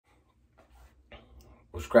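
Silence at first, then faint soft breath or mouth sounds, and a man starting to speak a greeting near the end.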